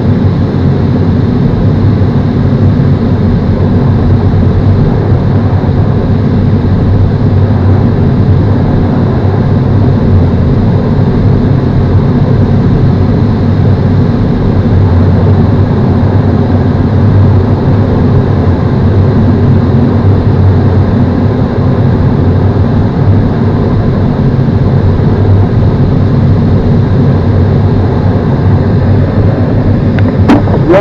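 Steady, loud rush of airflow around the LS4 glider's canopy and cockpit in flight, an even low-pitched noise that does not change.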